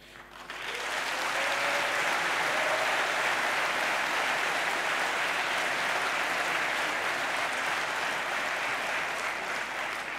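Large audience applauding, building within the first second to a steady level and easing slightly near the end.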